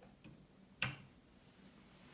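A single sharp click a little before the middle, with a faint tick or two just before it: a finger pressing a button on an aftermarket Android car stereo head unit.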